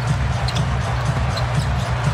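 A basketball being dribbled on a hardwood court, over a steady, loud arena din with music playing.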